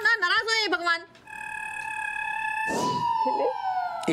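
A sustained electronic tone with a short whoosh about three seconds in, after which the tone slides steadily downward: a sitcom scene-transition sound effect.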